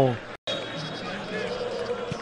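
Match-broadcast field ambience from a football stadium: a low, steady background with faint distant voices. It follows the tail of the commentator's voice and a brief dropout in the sound at an edit.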